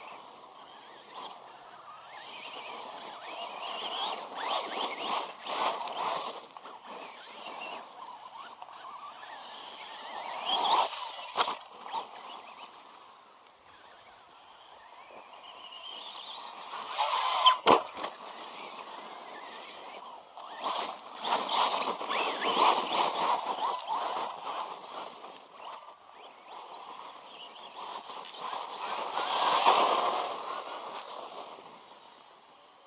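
Electric RC monster truck's brushless motor and drivetrain whining over dirt, swelling and fading as the truck accelerates, turns and passes close. A sharp knock comes a little past halfway through.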